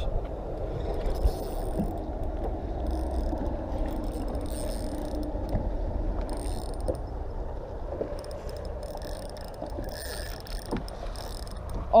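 Spinning fishing reel being cranked, its gears whirring steadily, over a constant low rumble.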